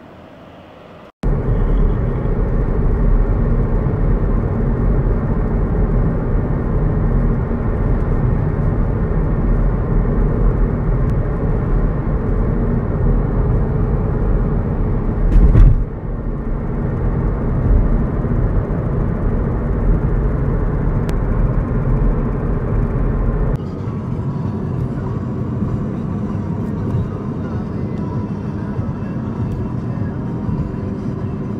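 Steady road and wind noise inside a moving 10th-gen Honda Civic at highway speed. It starts abruptly about a second in, with a brief louder rush about halfway through, and turns a little quieter about three-quarters of the way through.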